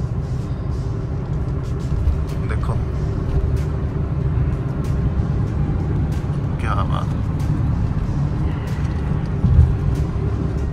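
Steady low rumble of road and engine noise inside a moving car's cabin, with two brief vocal sounds, about two and a half seconds in and again near seven seconds.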